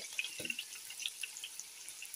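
Sliced onions, green chillies and tomatoes sizzling in hot oil in a nonstick wok, with scattered small crackles and pops that thin out toward the end.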